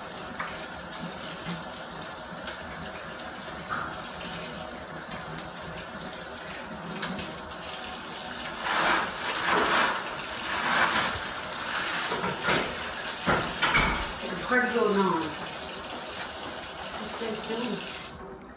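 Kitchen faucet running steadily into a stainless steel sink during handwashing. From about eight seconds in, a run of loud crackling rustles as paper towels are pulled from a wall dispenser and handled.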